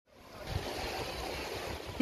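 Beach ambience: a steady rush of wind and surf, fading in over the first half-second.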